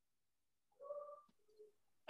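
Near silence, broken about a second in by a faint, short two-note pitched call: a higher, longer note, then a brief lower one.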